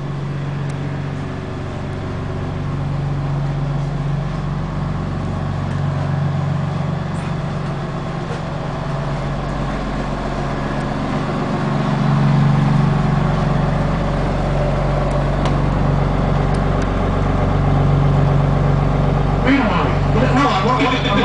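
5.9-litre Cummins diesel engine of a school bus idling steadily, heard from inside the bus cabin as a low, even hum that swells and eases slightly.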